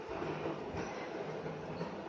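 Scissors cutting through saree fabric laid on a table, the blades closing stroke after stroke.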